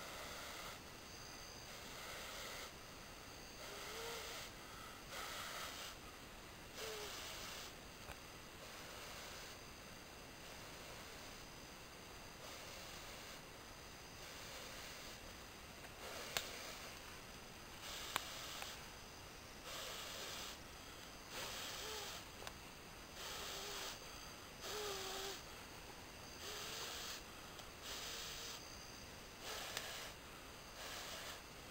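Repeated long breaths blown into a tinder bundle held to the mouth, one every second or two with short pauses between, to coax a smouldering ember into flame. Two sharp clicks come about two-thirds of the way through.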